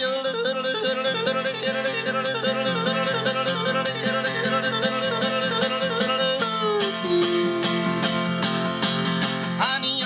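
A man yodeling over his own strummed acoustic guitar in a cowboy song. The first six seconds are a warbling run of quick breaks up and down in pitch, and about seven seconds in he holds one long, lower note.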